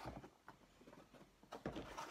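Faint knocks of objects being handled over quiet room tone, with a slightly louder knock near the end.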